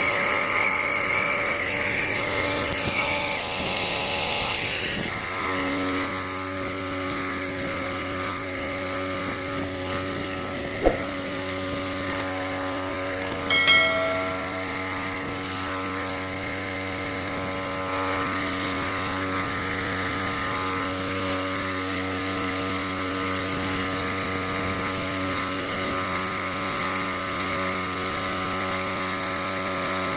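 Knapsack power sprayer's small petrol engine running steadily, with the hiss of pesticide spraying from the lance nozzle over the first few seconds. A sharp click comes about eleven seconds in and a short high-pitched tone about fourteen seconds in.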